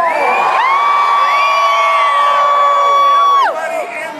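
A crowd cheering and screaming. One close voice holds a single long, high, steady scream for about three seconds and breaks off shortly before the end, while other voices rise and fall around it.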